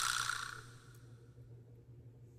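A man's long breathy sigh of exasperation at tedious work, fading out within the first second, followed by a faint steady low hum.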